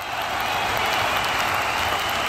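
Crowd applauding with some cheering, fading in quickly at the start and then holding steady and loud.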